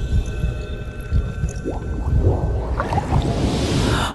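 Cinematic trailer sound design: a low rumble under sustained drone tones, with short gliding tones partway through, building into a rising swell of noise that cuts off suddenly at the end.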